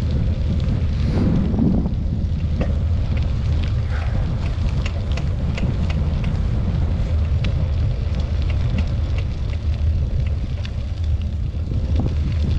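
Steady low wind rumble on the microphone of a camera riding along on a moving bicycle, with scattered small clicks and rattles as it rolls over the rough, potholed dirt road.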